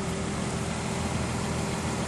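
Nissan Elgrand's 3.5-litre V6 idling: a steady low hum with a faint constant tone above it.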